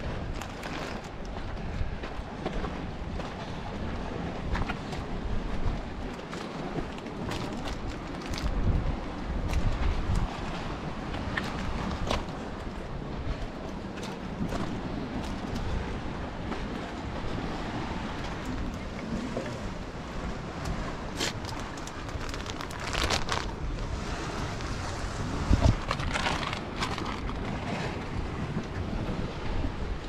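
Wind buffeting the microphone in uneven gusts, with scattered short clicks and scrapes.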